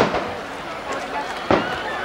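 Two aerial firework shells bursting, sharp booms about a second and a half apart, each with a short echo.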